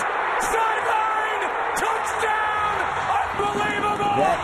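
Stadium crowd cheering and yelling loudly at a game-winning touchdown on the last play. A TV play-by-play announcer's voice shouts over the crowd.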